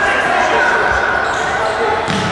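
Indistinct voices calling and shouting, echoing in a large sports hall, with a futsal ball thudding as it is kicked and bounced on the court floor.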